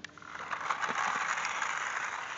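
Radio-controlled toy Warthog car driving off: its small electric motor and gears whirring, starting about half a second in and then running steadily.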